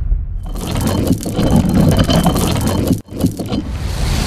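Animated logo-reveal sound effects: dense mechanical scraping and clattering, like metal parts sliding and locking together, cut by a brief sudden gap about three seconds in.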